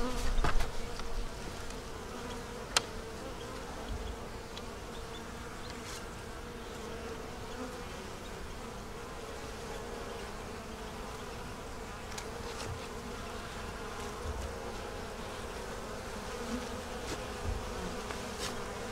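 Honey bees buzzing in a steady hum from an open hive. A single sharp click sounds about three seconds in.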